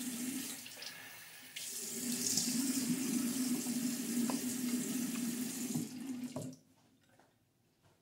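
Water running from a bathroom sink tap and splashing as a face is rinsed of soap, with a steady low hum beneath it. It gets louder about a second and a half in, and the tap is shut off about six and a half seconds in.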